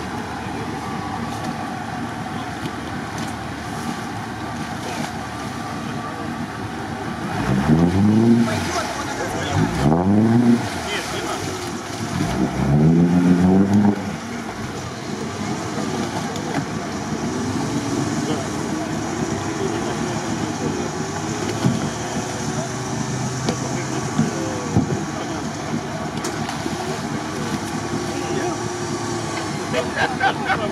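Lada Niva's four-cylinder engine revving hard in three bursts, each rising and falling in pitch, as the car tries to drive out of deep water and mud, then a run of softer, slower revs. All of it sits over a steady background rush.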